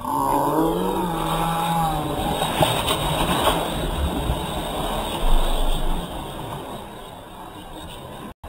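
Several children yelling as they jump together into a swimming pool, then the rushing noise of the splash and churning water, fading away over the last couple of seconds.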